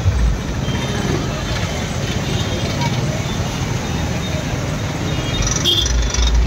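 Loud, dense outdoor noise of a street procession at a truck-mounted DJ sound system: steady heavy low bass under a haze of crowd voices.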